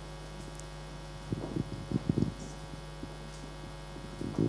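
Steady electrical mains hum on a room microphone and PA feed, with a few faint, brief sounds about a third of the way through.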